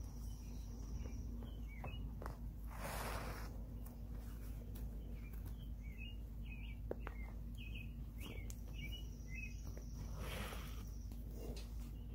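Faint outdoor background with a steady low hum and scattered short small-bird chirps. Two brief rustles, about three seconds in and near the end, come from hands working a leather moccasin as it is stitched.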